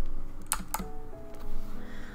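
A few computer keyboard key clicks over soft background piano music.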